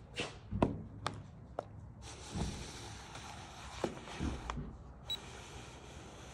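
Handling noise from a plastic stud finder: a handful of scattered clicks and light knocks as it is gripped and set against a wall, the loudest about half a second in.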